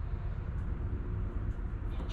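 Steady low background rumble. A coin starts scratching the latex coating of a lottery ticket right at the end.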